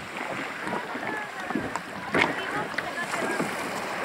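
Shallow sea water lapping and splashing around swimmers and plastic kayaks, with distant voices of people in the water. A brief louder splash comes a little past halfway.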